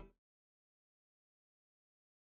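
Near silence: a brief sound cuts off just after the start, and the audio then drops to nothing.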